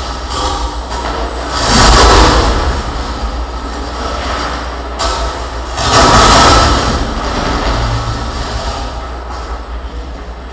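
Harsh noise performance: a dense, distorted wall of amplified noise from contact-miked chains and sheet metal. It swells to its loudest about two seconds in and again about six seconds in.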